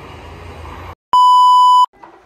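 A single loud, steady electronic beep lasting under a second, an edited-in bleep sound effect at a cut between scenes. It comes about a second in, after faint room hum, and stops abruptly.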